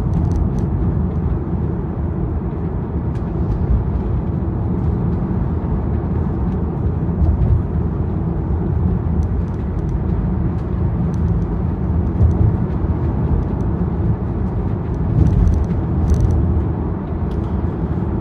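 Steady low road and tyre rumble of a car driving at moderate speed, heard inside the cabin.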